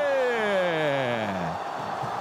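A man's long held shout, the commentator's drawn-out goal call, sliding steadily down in pitch and fading out about a second and a half in. Steady noise from the stadium crowd runs underneath.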